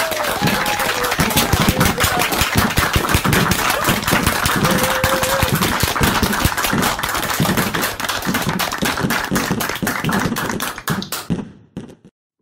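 Celebratory fireworks sound effect: a dense, rapid run of crackling bangs with a few short whistles near the start and about halfway through, cutting off abruptly just before the end.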